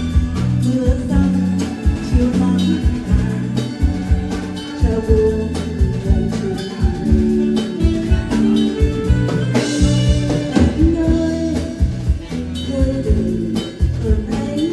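A woman singing a Vietnamese song through a microphone and PA, backed by a live band with a drum kit keeping a steady beat.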